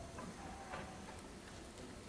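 Faint light clicks, about two a second, over quiet room noise in a hall, with no music playing.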